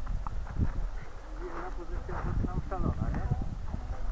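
Indistinct voices, clearer in the second half, over a steady low rumble of wind on the microphone, with scattered low knocks.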